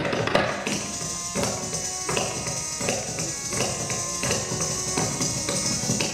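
Kathak dancer's ghungroo ankle bells jingling continuously with the footwork, over a sustained melodic accompaniment that moves in steps; the tabla strokes drop away for most of it.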